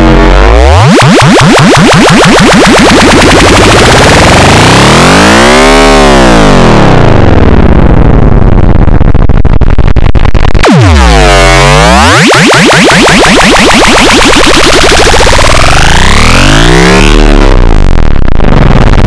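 Loud, heavily distorted electronic noise-music, with a dense buzzing tone that swoops slowly down and back up in pitch in a repeating cycle of about 11 seconds.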